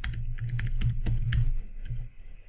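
Typing on a computer keyboard: a quick run of about a dozen keystrokes in two seconds.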